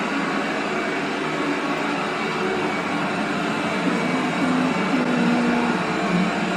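Eufy robot vacuum cleaner running across a hard floor: a steady whir of its suction motor and brushes, with a faint low hum that shifts slightly in pitch about four seconds in.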